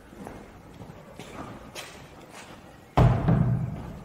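Footsteps on a hard tiled floor, then a sudden heavy low thump about three seconds in that dies away over most of a second.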